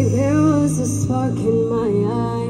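A woman singing live into a microphone over a backing track with steady bass notes, heard through stage speakers. Her voice bends and glides between held notes.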